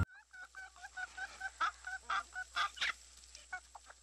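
A chicken clucking: a quick run of short, quiet clucks, with a few sharper clicks among them in the middle.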